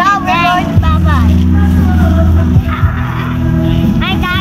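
A pop song with a sung vocal over a heavy, held bass note.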